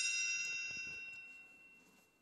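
A bright bell-like chime, struck once and ringing out, fading away over about two seconds: the read-along's signal to turn the page.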